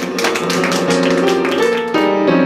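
Piano playing a quick run of struck notes over sustained lower tones.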